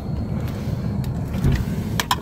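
Car engine running, a steady low rumble heard from inside the cabin.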